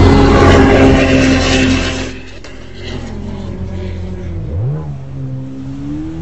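Jet ski engine running hard, loud for about two seconds, then easing off. A little past four seconds it revs up again and holds a steady note.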